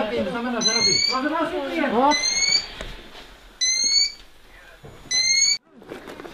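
An electronic alarm repeats a short, slightly rising beep about every one and a half seconds, four times, while voices talk through the first half. The sound cuts off abruptly just before the end.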